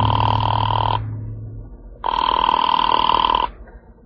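A telephone ringing twice, with a rapid trill: a ring of about a second, a pause, then a slightly longer ring.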